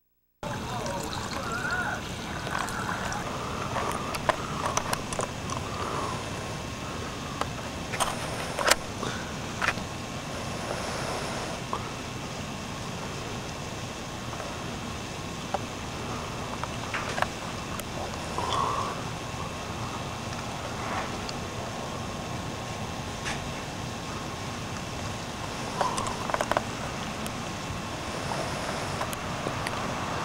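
Steady background hiss of an outdoor night-time home-video recording, with a faint steady whine, a few sharp clicks and faint indistinct voices now and then.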